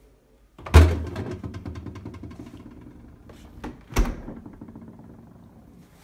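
The doors of a Haier HB14FMAA American fridge freezer being shut one after the other: a heavy thud about a second in, the loudest sound, then a second, lighter knock about three seconds later.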